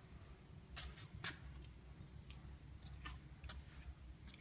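A few faint sharp clicks over a low steady hum, very quiet overall: two clicks about a second in and a few softer ones after.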